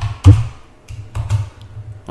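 A few keystrokes on a computer keyboard, the loudest just after the start, including the Enter key that runs the command.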